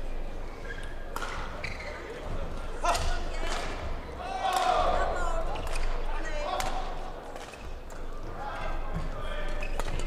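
Badminton rally in a large hall: rackets striking the shuttlecock in a run of sharp hits, with court shoes squeaking on the mat. Reverberant hall murmur and background voices run underneath.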